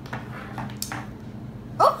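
A short, sharp cry that rises in pitch near the end, as a dog under the table is accidentally kicked. Before it, a few faint light knocks on a wooden tabletop.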